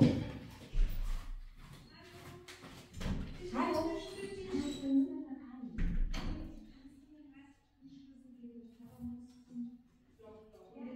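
Muffled, indistinct voices from another room, with a thud about a second in and another about six seconds in, as someone goes off to answer the doorbell.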